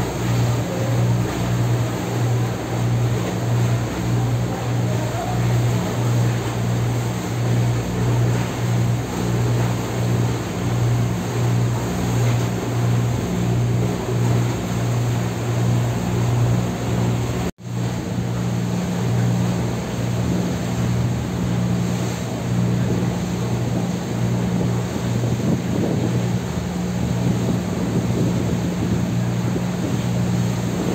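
A tour boat's engine running under way with a steady low drone that pulses evenly, over the rush of water along the hull and some wind. The sound drops out for an instant a little past halfway.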